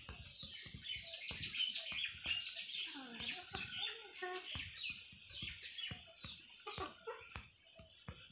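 Faint bird calls in the background: many short, falling chirps repeating throughout.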